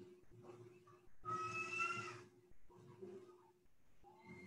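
A single high-pitched, drawn-out call, like an animal's, lasting about a second partway through, over a steady low hum.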